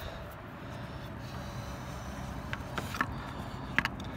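A steady low background rumble with a few light clicks and taps, as a hand handles rubber hoses and fittings under a scooter's bodywork.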